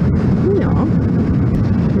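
Steady wind rush and engine noise of a Yamaha MT-125's single-cylinder 125 cc engine cruising at road speed, heard with wind on the microphone. A short spoken word sits about half a second in.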